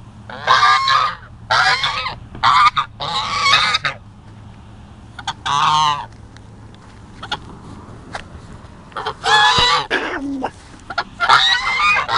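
Two domestic geese honking repeatedly in quick bouts, calling at a person they treat as an intruder on their territory. After about six seconds there is a lull of a few seconds, and the honking starts again near the end.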